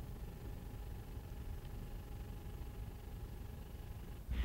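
Faint steady hiss with a low rumble and a few faint constant tones, the background noise of an old film soundtrack, with no distinct sound.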